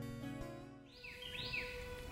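Acoustic guitar music dying away, then a bird calls with about three quick downward-sliding chirps about a second in.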